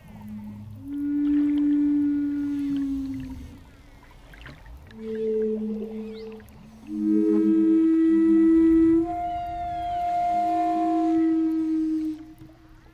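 A wooden Native American-style flute playing slow, long held notes, each lasting a second or two with short pauses between phrases. At times a second, lower tone sounds along with the melody.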